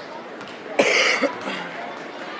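One loud cough close to the microphone, about a second in, over a low murmur of gym chatter.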